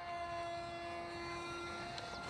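Electric motor and propeller of an Easy Trainer 800 RC motor glider running in flight: a faint, steady whine that holds one pitch.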